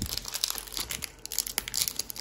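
Foil-wrapped trading card pack crinkling in the hands as it is worked open: a dense, crackling rustle of many small snaps.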